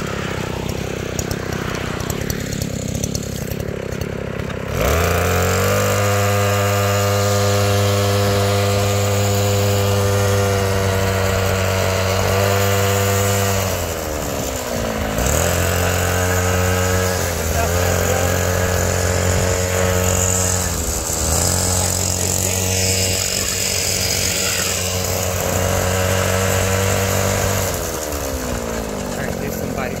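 Gas-powered skateboard's small engine running at a steady high pitch under throttle, the sound growing rougher and quieter in the first few seconds. Its pitch falls as the throttle eases about fourteen seconds in, picks back up, dips briefly twice more, and falls again near the end.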